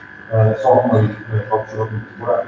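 Only speech: Hungarian talk, with a steady faint tone beneath the voice.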